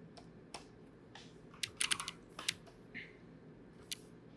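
Computer keyboard keys being pressed for shortcuts, a run of several quick clicks around the middle and a single sharper click near the end, over a faint steady hum.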